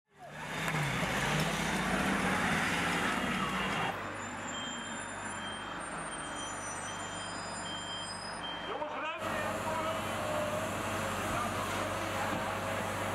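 Heavy water cannon truck's engine running as it drives along a street, with street noise and voices around it. The sound changes abruptly about four seconds in and again about nine seconds in, at edits between clips, and short repeated beeps come through in the middle part.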